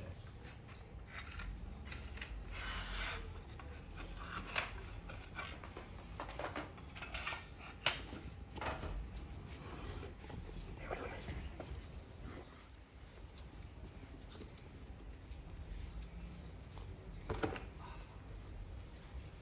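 Scattered knocks and clatter of ceramic tiles and tiling tools being handled, the sharpest about halfway through and again near the end, over a steady low rumble, with faint voices in the background.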